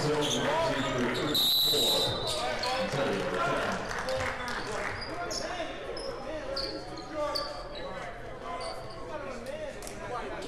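Basketball dribbling on a hardwood court over a chattering gym crowd, then a single shrill referee's whistle blast lasting under a second, about a second and a half in, stopping play.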